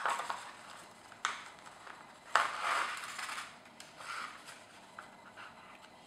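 Paper rustling as a folded paper signature is handled and opened and a needle and thread are passed through its sewing hole during hand bookbinding: a short sharp rustle about a second in and a longer rustle around the middle, with smaller rustles between.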